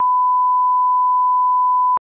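Test-card tone: a single steady 1 kHz beep, held at one pitch and level, cutting off suddenly near the end.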